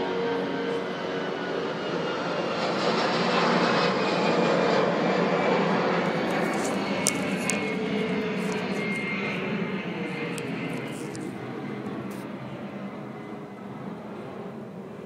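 Airplane passing low overhead: broad engine noise that swells to its loudest about four seconds in and then slowly fades, with a faint falling whine.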